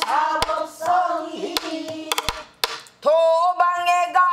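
A woman singing pansori in full voice, accompanying herself on a buk barrel drum with sharp stick strikes between her phrases. About three seconds in she holds one long, steady note.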